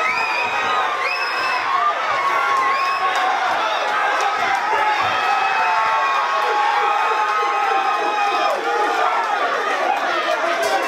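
Boxing crowd cheering and shouting, many voices overlapping, with high-pitched shouts standing out.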